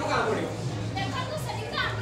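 Several voices talking over one another in a hall, with one voice rising sharply near the end, over a steady low hum.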